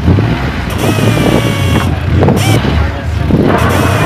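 DeWalt cordless impact wrench running in several loud bursts on the wheel lug nuts of a military light armored vehicle, its motor whine rising and falling between bursts.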